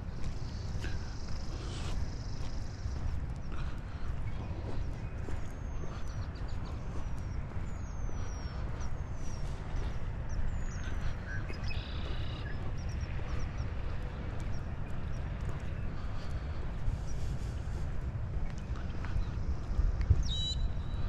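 Outdoor walking ambience on a wet paved path: footsteps under a steady low rumble, with several short, high, falling bird calls in the middle.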